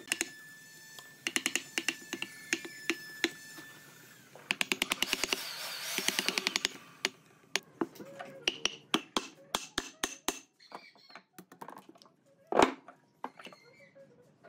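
Steel chisel chopping and paring a round mortise into a dry tree-trunk log: a series of sharp wooden taps and knocks, with a fast run of taps around five seconds in and a single louder knock near the end.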